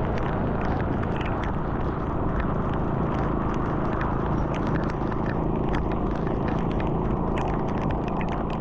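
Steady rumble of wind and tyre noise from riding along a rain-soaked highway, with many short ticks scattered through it, as from raindrops striking the camera.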